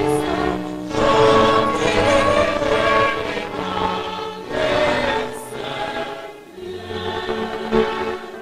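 Mixed choir of men and women singing a Protestant hymn, in phrases with short breaks between them.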